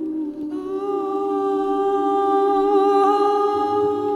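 Live contemporary vocal music. A woman hums or sings one long held note that enters about half a second in, over a sustained, slowly wavering electric guitar drone.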